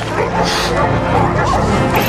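A strained voice grunting and straining, its pitch wavering up and down, as of someone pinned under a heavy weight.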